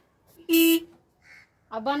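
Motorcycle horn giving one short, steady beep about half a second in, pressed by a child at the handlebars with the ignition switched on.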